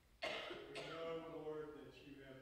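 A person's voice starting abruptly about a fifth of a second in, like a throat clearing, then running on for about a second and a half.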